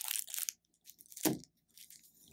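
Thin clear plastic wrapper around a pack of four crayons crinkling as it is handled, mostly in the first half second, then a few faint crackles.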